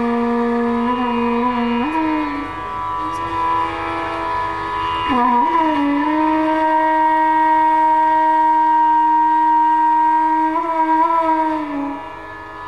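Bansuri (Indian bamboo flute) playing Raag Yaman Kalyan in slow, unaccompanied phrases. A held note slides up to a higher one about two seconds in, dips briefly, then holds for about six seconds before gliding down near the end.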